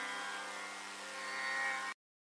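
Closing moment of a Carnatic performance for voice, violin and mridangam: after the mridangam's final strokes, the ensemble's held notes ring on as a steady drone, swell slightly, then cut off abruptly just before the end.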